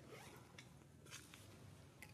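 Near silence, with a few faint, short scratchy rustles; the loudest comes about a second in.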